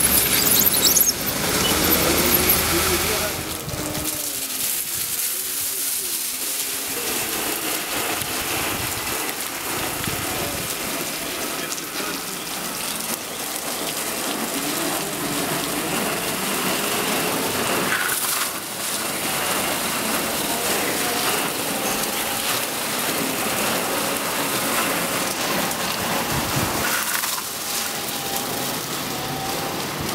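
Single rotating brush of a Bitimec wash machine scrubbing the side of a camper under water spray: a steady hiss of spraying and splashing water. It is louder for the first three seconds or so, with a low hum under it.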